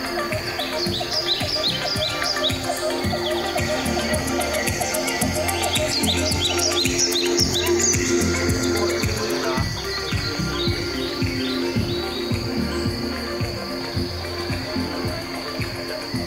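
Ambient electronic soundscape of the light-and-sound art installation, played over outdoor speakers: sustained drone tones over a pulsing low beat, with runs of quick, high, bird-like chirps that thicken around the middle.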